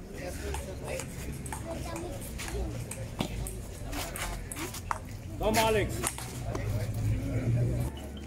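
Table tennis rally on an outdoor concrete table: the ball clicking off paddles and the table at an irregular pace, with a shout of "Komm" about five and a half seconds in.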